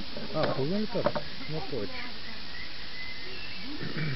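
Folding alcohol camp stove burning under a steel cooking pot, giving a steady hiss and sizzle. Voices talk over it in the first couple of seconds.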